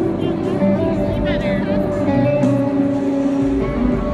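Live pop concert music played loud over the arena sound system and recorded from the crowd: an amplified band with guitar and held chords. A wavering voice rises over it briefly about a second in.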